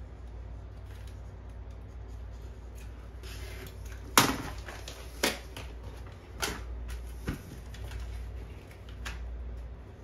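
Handling and cutting of a cardboard template: a quiet scraping bed over a low steady hum, broken by about five sharp clicks and knocks, the loudest a little after four seconds in.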